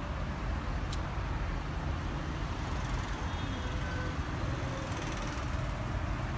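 Steady street traffic noise, a continuous low rumble of passing vehicles, with a short sharp click about a second in.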